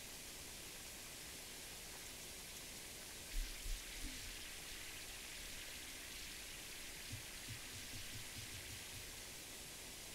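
Faint, steady outdoor hiss over an open field of dry grass, with a few soft low thumps about three seconds in and a run of weaker ones from about seven to nine seconds.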